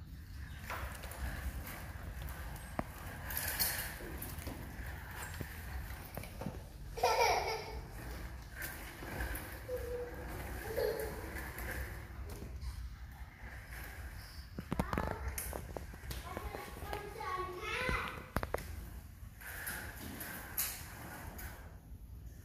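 Children's voices talking indistinctly in bursts over a steady low rumble, with a few soft knocks.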